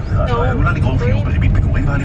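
Low, steady rumble of a moving car heard from inside the cabin, with a voice talking over it.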